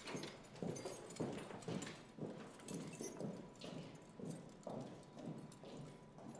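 Footsteps of hard-soled boots on a hard floor, walking at a steady pace of about two steps a second.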